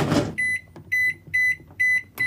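Hamilton Beach microwave oven keypad beeping as its buttons are pressed: four short, high beeps at about two a second.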